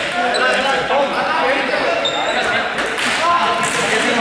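Several young people's voices chattering and calling out over each other in a large, echoing sports hall, with a few sharp knocks.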